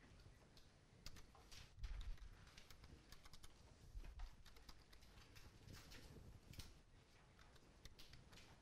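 Faint, irregular clicking of keys on a computer keyboard being typed on, with a few soft low thumps.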